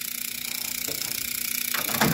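A 120-volt ice cube relay chattering very quickly as its coil flutters instead of pulling in, fed on a microwave's door-switch line with no resistor in the circuit, over a steady low hum.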